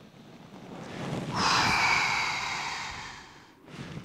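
A man breathing out forcefully through the mouth in one long, hissing breath for a breathwork exercise. It builds over about a second, lasts about two seconds and then cuts off.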